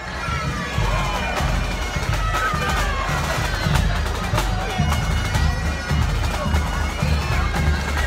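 Marching band playing: a drum beating under a wind-instrument melody.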